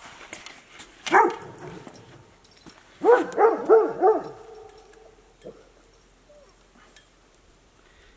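A dog yelping once about a second in, then giving four quick yips in a row around three seconds in.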